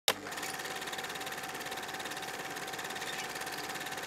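A film projector running: a steady mechanical whir with a fast, even clatter and a faint hum. It starts with a click.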